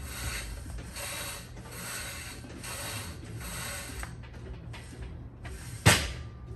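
Steel cable of a high-pulley cable machine running through its pulleys during face-pull reps with a rope attachment: a rubbing hiss about once a second that stops about four seconds in. A single sharp knock just before the end.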